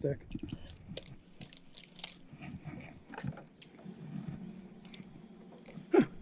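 Scattered light clicks and small knocks of fishing tackle being handled as a lure is brought back in and the rod and reel are readied, with a faint low murmur underneath.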